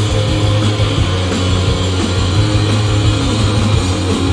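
Live rock band playing loudly: electric guitars over a held bass note, with drums and cymbals keeping a steady beat.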